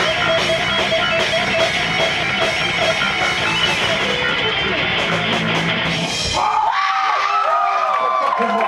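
Thrash metal band playing live, with distorted electric guitars and drums, ending abruptly about six seconds in. Shouts and whoops from voices follow.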